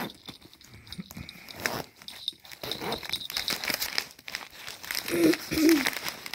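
Zipper on a faux-leather mini backpack being pulled open, then crinkling of the packing paper stuffed inside as hands dig into it. A short wavering hum sounds near the end.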